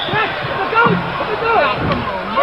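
Basketball arena crowd noise: a steady din of many voices, with individual calls and shouts rising out of it.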